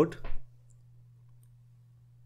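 The tail of a spoken word, then near silence with a low steady electrical hum and a couple of faint clicks.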